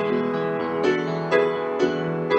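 Acoustic grand piano played solo, a new chord struck roughly every half second and left to ring into the next.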